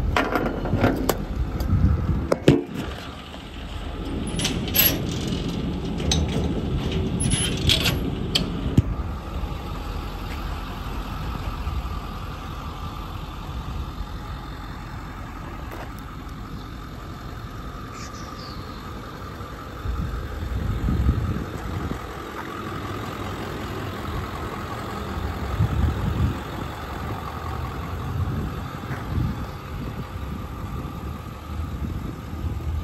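Truck engine idling steadily, with a run of knocks and clatter in the first nine seconds.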